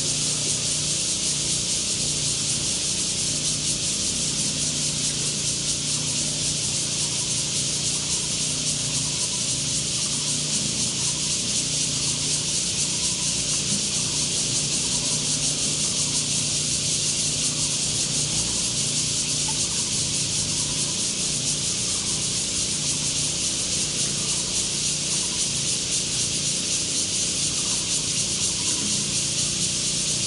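A steady, loud, high-pitched chorus of cicadas buzzing in the trees, unchanging throughout.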